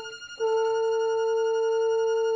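Music: a single brass note held steadily at one pitch, coming back in about half a second in after a brief fade.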